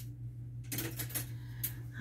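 Craft supplies being handled on a tabletop: a single click at the start, then a run of light clicks and rustles from about a third of the way in. A steady low hum runs underneath.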